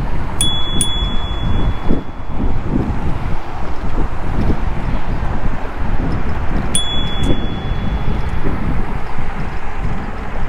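A bicycle bell struck twice in quick succession, once near the start and again about seven seconds in, each pair leaving a clear ringing tone that dies away over about a second. Under it runs a steady rumble of wind on the microphone from riding.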